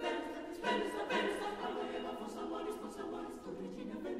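Mixed chamber choir of men's and women's voices singing a cappella, holding full chords with new entries about half a second and a second in.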